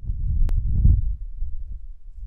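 A loud deep rumble that swells and fades in slow pulses, with a single sharp click about half a second in.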